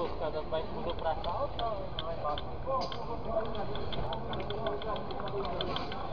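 Indistinct voices of people talking, over a steady low rumble of outdoor background noise.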